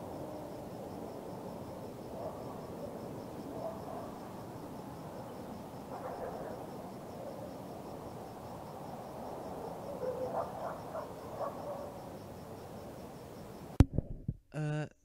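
Night ambience: a cricket chirping in a faint, evenly pulsed high trill over a low hiss, with a few frog croaks about six seconds in and again near ten to eleven seconds. It ends with one sharp click.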